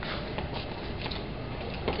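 Steady background noise of a busy hallway, with a few faint clicks.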